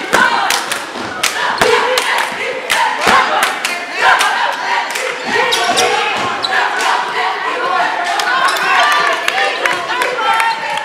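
Basketball game in a gym: a basketball bouncing on the hardwood court, with frequent sharp knocks, over the constant voices and shouts of the crowd and players.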